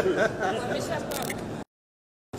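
A voice and room chatter, with a few sharp clicks about a second in; then the sound cuts out to dead silence shortly before the end.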